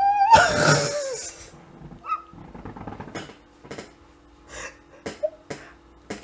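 A woman laughing into her hand: a high, drawn-out squeal of laughter that rises and falls in the first second and a half, then a few short, breathy puffs of laughter.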